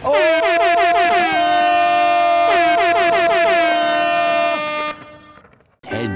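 Air horn sound effect: a loud, steady blare that starts suddenly, is blown again about two and a half seconds in, and stops after about four and a half seconds.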